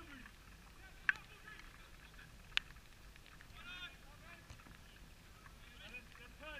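Two sharp knocks about a second and a half apart, typical of a football being kicked on an artificial pitch some way off, then a short distant call past the middle.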